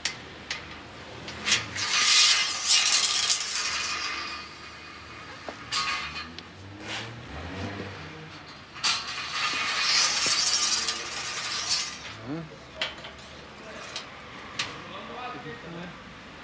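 Metal clinks and knocks, with two scraping, hissing passes of about two seconds each, one near the start and one past the middle: a metal gauging dipstick being worked in the fill opening of an underground petrol tank during a tanker delivery.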